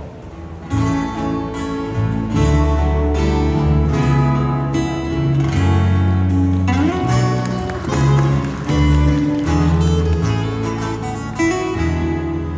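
Two acoustic guitars strumming and picking over a bass guitar in an instrumental intro to a Hawaiian-style song, the playing starting about a second in.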